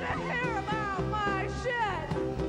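A band playing live on drums, bongos and electric guitars, with a high part sliding down in pitch in several short swoops over the beat.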